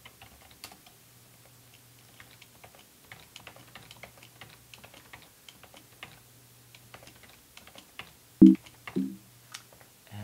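Typing on a computer keyboard: a scatter of quick, light key clicks over a faint steady low hum. About eight seconds in comes a single louder knock, followed by a couple of brief pitched sounds.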